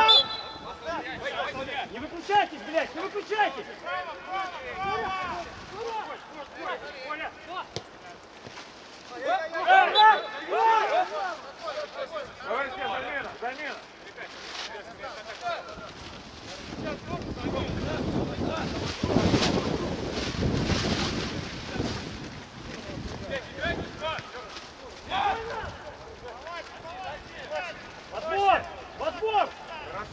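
Footballers' shouts and calls across an outdoor pitch during play, in several bursts. For several seconds in the middle, wind buffets the microphone with a low rumble.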